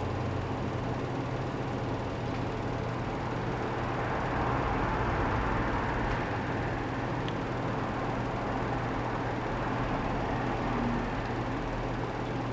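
Steady room noise: a low hum under an even hiss, with one faint click about seven seconds in.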